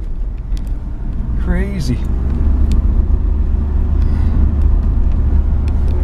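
Low, steady rumble of a pickup truck driving, heard from inside the cab, growing louder about two seconds in. A short voice exclamation comes just before it swells, and a few sharp knocks from the phone being handled.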